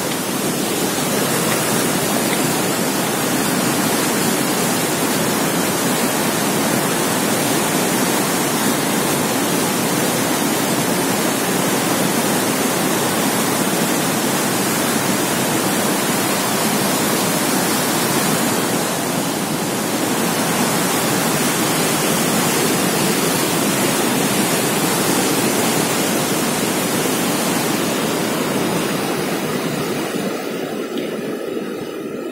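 Steady, loud rush of a fast white-water mountain river, easing a little near the end.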